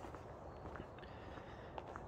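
Faint footsteps on a tarmac lane over a steady low hum of distant motorway traffic.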